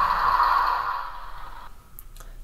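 Simulated diesel engine sound from a Tsunami2 sound decoder, played through the small speaker in a model diesel locomotive. It holds steady and then dies away as the engine notches down once the load on the motor is lifted, falling off sharply shortly before the end.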